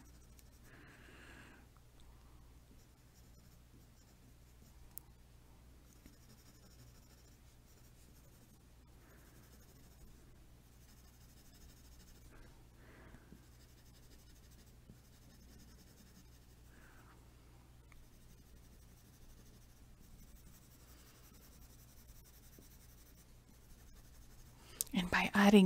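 Faint scratching of a pencil on paper, coming and going in short stretches as texture is drawn in.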